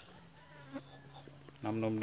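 An insect buzzing with a steady low hum, with a man's voice starting near the end.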